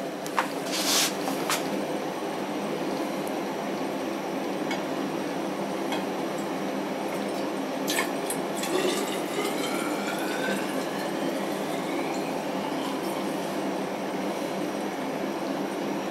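Distilled spirit poured from a glass jar into a glass vessel to fill it for an alcoholmeter reading, the pitch of the pour rising as the vessel fills. There are a few glass clinks and a steady hum underneath.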